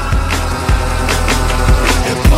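Background music with a heavy bass line and a drum beat about twice a second.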